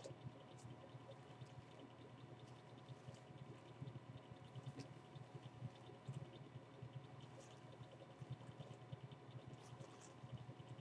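Faint, irregular scratching and rustling of a detangling brush being drawn through wet, product-coated hair, over a low steady hum.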